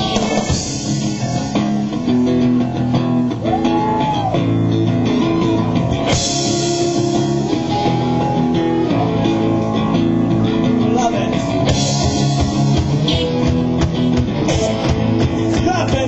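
Rock band playing live: electric guitar, bass and drum kit, with a voice or lead line gliding in pitch at times. A bright cymbal wash comes in twice.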